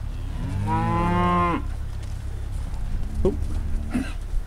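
Beef cattle mooing: one long moo starting about half a second in and lasting about a second. Two short, fainter sounds follow near the end.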